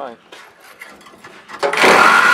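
A handheld power tool, held up against the truck's exhaust, starts up near the end and runs with a loud steady whine over a harsh rasp. Before that there are only faint scrapes and clicks as the tool is set in place.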